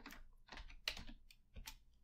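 Computer keyboard keystrokes: about half a dozen quiet, separate key presses at an uneven pace as a terminal command is typed.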